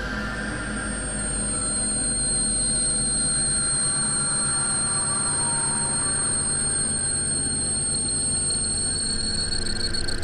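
Experimental synthesizer drone-and-noise music: a dense, noisy wash of layered steady tones. Two high, piercing steady tones enter about a second in, and the deep bottom of the drone drops away about four seconds in.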